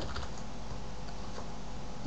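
Faint clicks of a computer keyboard and mouse, a few scattered taps, over a steady low hum of room noise.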